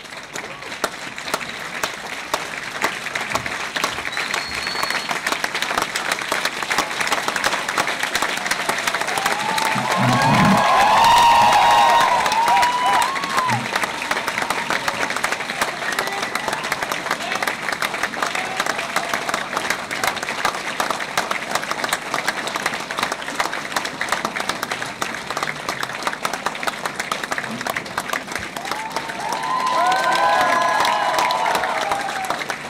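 Audience applauding steadily, a room full of hands clapping. A few voices call out above the clapping about ten seconds in and again at the very end, where it is loudest.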